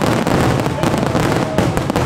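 Many fireworks bursting at once: a dense, continuous crackle of rapid sharp bangs.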